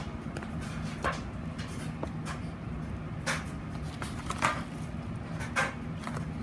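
Steady low room hum with about six small, sharp clicks and knocks at irregular intervals, the loudest between about three and a half and five and a half seconds in.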